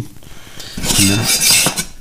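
Stainless steel rocket stove parts scraping and clinking against each other as the inner cylinder is lifted out of the outer body. The metal sound starts about a second in and lasts about a second.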